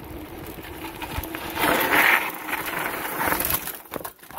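Bicycle rolling fast downhill on a rough dirt trail: a steady rush of tyre noise with frequent small knocks and rattles over bumps, swelling about halfway through.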